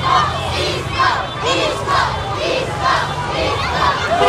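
Excited street crowd cheering and shouting, many voices overlapping in short shouts, children among them.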